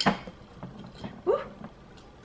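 Fingers rummaging in a glass jar of small metal jewelry and trinkets: a sharp clink at the start, then a few faint clicks as the pieces shift against each other and the glass.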